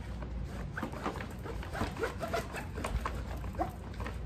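A cloth rubbing and scrubbing over plastic tackle box trays in short strokes, with several short rising squeaks.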